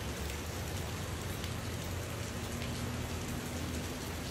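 Steady hissing noise with a low rumble underneath; a faint hum joins about two seconds in.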